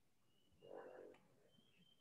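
Near silence on an online call, with one faint, brief sound about half a second in.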